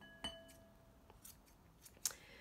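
Singer Professional scissors giving a single metallic snip about a quarter second in, its steel blades ringing briefly, followed by a couple of faint clicks.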